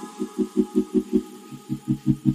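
Background music: a fast, even pulsing bass, about five or six beats a second, under steady held synth notes. The pulse drops out briefly just past the middle, then picks up again.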